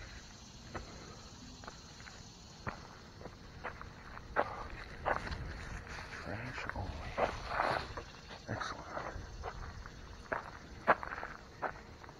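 Footsteps crunching on a gravel path, irregular steps that are busiest in the middle of the stretch, with a few sharper clicks near the end.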